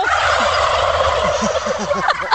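Plush turkey toy's sound chip playing a turkey gobble through its small speaker: one long, rattling call that slowly fades toward the end.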